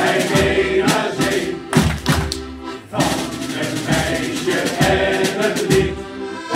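Men's pirate shanty choir singing together, with low thumps of accompaniment beneath the voices and a short break between phrases just before three seconds in.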